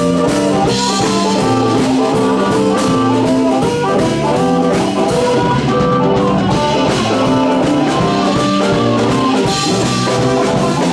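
Live blues band playing: amplified harmonica blown into a microphone over electric guitar and drum kit, at a steady beat.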